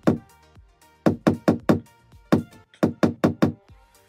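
Steel claw hammer striking a nail into a wall: quick runs of light taps, about a dozen strikes in three bursts, starting about a second in.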